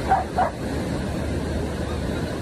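A corgi barking twice in quick succession just after the start, over a steady low rumble of wind and surf.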